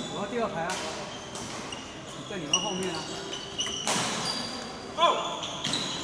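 Badminton rally: rackets striking a shuttlecock about five times, the loudest hit about five seconds in, with short high squeaks of court shoes on the floor between the hits.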